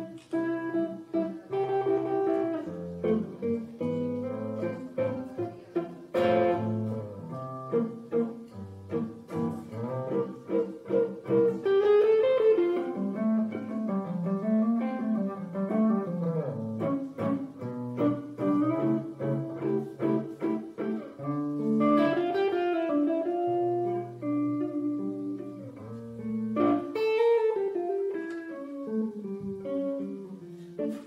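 Tango played live on an electric guitar, with plucked notes and chords, joined in places by a melody line that slides and wavers between notes.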